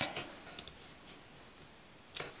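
A few faint, light clicks in the first second, then a quiet room.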